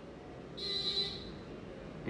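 A short electronic buzzing beep, under a second long, starting about half a second in, over a steady low room hum.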